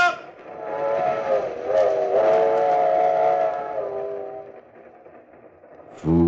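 Steam train whistle sound effect from a 1940s radio broadcast: a multi-tone chord whistle, held and wavering in pitch, that fades out after about four seconds into a quieter rumble.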